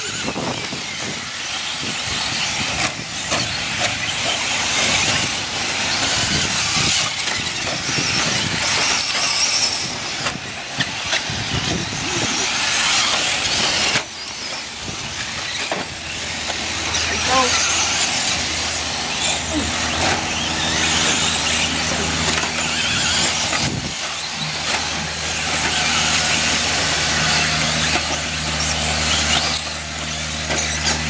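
Several electric 4WD short-course RC trucks racing on dirt: high-pitched whine from their motors and gears, changing constantly with the throttle, with tyres scrabbling on the track. A low steady hum comes in about two-thirds of the way through.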